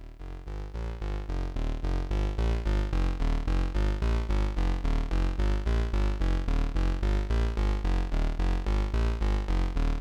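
Yamaha YM3812 FM synthesis chip in a Eurorack module, running an '8bit' patch and played as a voltage-controlled oscillator, stepping through a quick run of short synth notes, about four a second, that change pitch from note to note. It fades in over the first two seconds.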